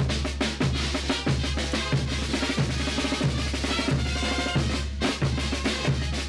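Bolivian brass band playing a morenada: bass drum and snare drum keep a steady, heavy beat, about three strokes every two seconds, under trumpets and baritone horns.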